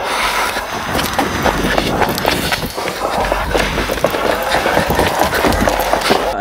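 Loud, steady rustling and crackling noise, dense with small clicks and with no clear voice in it.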